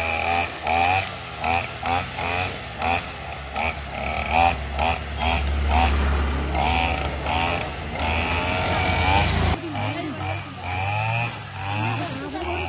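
Backpack two-stroke brush cutter running, its engine revving up and down over and over as it cuts weeds. A motorcycle engine adds a heavier low rumble through the middle, which cuts off suddenly a little after nine seconds.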